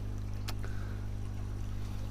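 Steady low hum, with a single faint click about half a second in.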